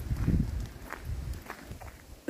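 Footsteps crunching on a gravel track at walking pace, about one step every 0.6 seconds.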